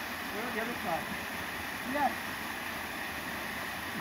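Small waterfall pouring into a rock pool: a steady rush of water, with a few brief faint voice sounds about a second in and again near the middle.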